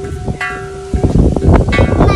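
Struck metal chimes of a playground outdoor musical instrument ringing, with a second strike about half a second in. The ringing cuts off abruptly about a second in and gives way to a rough, gusty rumble of wind on the microphone.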